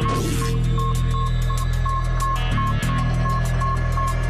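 Tense electronic background music with a sustained low hum and a steady ticking beat: a short beep repeats about four times a second. A whooshing sound effect sweeps down at the very start.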